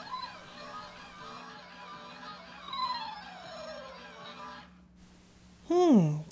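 Twirlywoos Peekaboo spinning soft toy playing its electronic tune and funny sound effects, with a falling, sliding tone about three seconds in; the sound cuts off shortly before the end.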